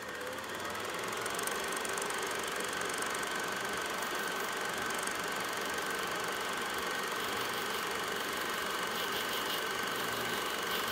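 Steady mechanical running noise like an idling engine, with a thin steady whine above it. It fades in over the first second and then holds level.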